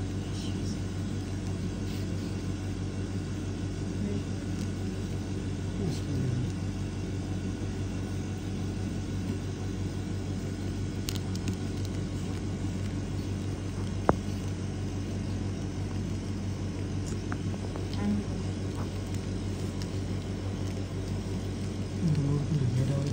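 Steady low machine hum, with one sharp click about fourteen seconds in.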